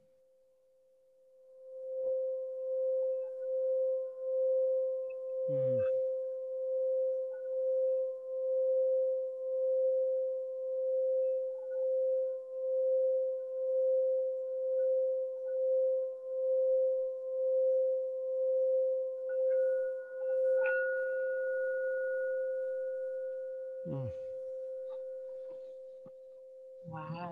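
Singing bowl sounding one sustained, pure tone with a steady wobble of about one pulse a second. A higher overtone joins about 20 seconds in, and then the tone slowly fades.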